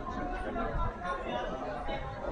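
Background chatter: several people talking at once, no words clear.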